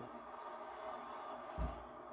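Quiet room tone with a faint steady hum, and one soft low thump about one and a half seconds in as a beer glass is set down on the cloth-covered table.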